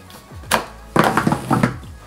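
Plastic air nozzle being pushed onto a flexible plastic hose: one sharp thunk about half a second in, then a louder stretch of plastic handling noise for most of a second.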